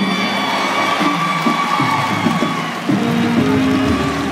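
Church keyboard playing long held gospel chords over a moving bass line, with a congregation cheering underneath.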